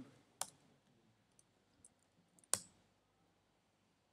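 Two sharp clicks at a computer, about two seconds apart, the second the louder, with a few faint ticks between them.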